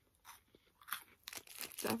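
A crisp wafer bar with peanut butter filling being bitten and chewed close to the microphone: a string of short, irregular crunches, sparse at first and coming thicker toward the end.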